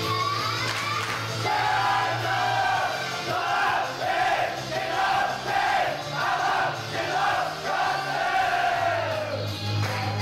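Upbeat pop backing music in a live theatre, with the audience shouting along in rhythmic chants over it.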